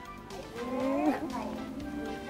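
Background music with a woman's voice over it: about half a second in, a long drawn-out vocal line that rises, falls and then holds one note.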